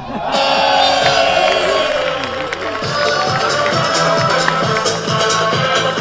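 Electronic dance music that comes in suddenly, opening with a falling sweep, then settling into a steady beat of about two kicks a second.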